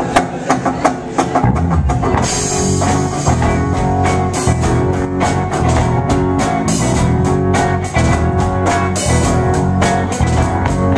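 Live rock band playing the instrumental opening of a song. A few guitar strums come first, then the drum kit and the rest of the band come in after about a second and a half, with cymbals from about two seconds in, and the full band plays on.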